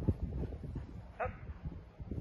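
A dog playing tug gives one short, high whine about a second in, over low rumbling and scuffling.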